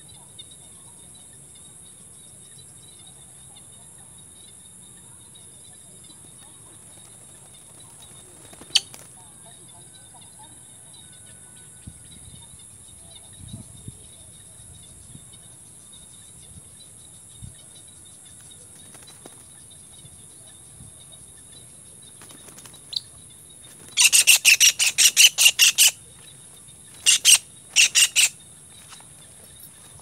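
Faint steady insect trilling, then near the end a kingfisher caught in a ground snare gives loud, rapid, harsh calls: one bout of about two seconds, then two short ones.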